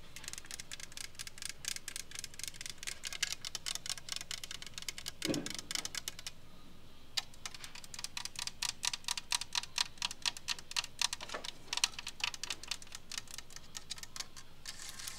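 Long acrylic fingernails tapping rapidly, first on a hard plastic helmet shell. After a brief pause about six seconds in, the tapping moves to a decorative rotary-dial telephone and its wooden base.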